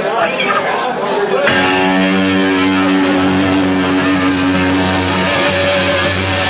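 Crowd chatter, then about a second and a half in an amplified electric guitar comes in with one long held chord that rings steadily through the rest.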